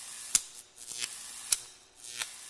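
Neon sign flickering on: abrupt bursts of crackling hiss, each broken by a sharp electric snap, three snaps in all, over a faint electrical hum.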